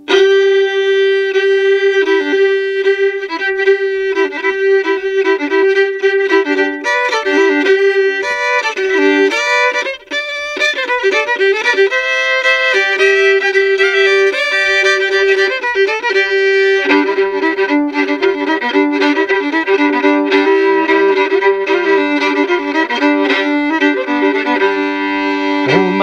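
Solo fiddle, an old 1700s violin cross-tuned G-D-G-D, playing an old-time tune: the melody runs over a steady drone on the open strings. About two-thirds of the way through, a lower drone string joins for fuller double stops.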